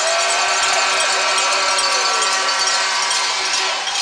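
Arena goal horn sounding one long, steady chord over crowd cheering, signalling a home-team goal; it stops just before the end.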